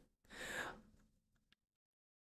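A person's short, faint breath, lasting about half a second, otherwise near silence.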